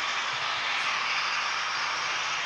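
Steady rushing background noise with no distinct events.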